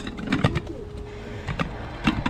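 A few light knocks of a bowl being handled, over a bird calling in the background.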